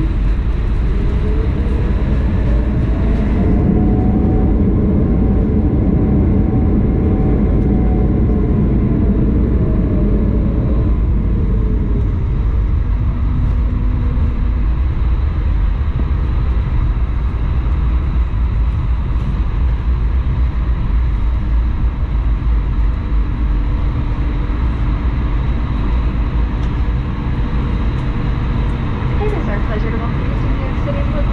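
Airbus A220-100's Pratt & Whitney PW1500G geared turbofan engine in reverse thrust on the landing rollout, with a squeaky spooling whine from the reversers. The whine rises over the first few seconds, holds, and falls away about ten seconds in as the engine spools down, over a steady loud rumble of the rollout.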